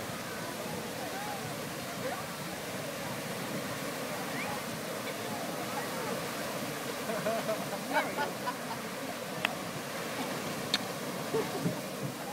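Grand Geyser erupting: a steady rush of water and steam, with onlookers' voices murmuring underneath and a few sharp clicks in the second half.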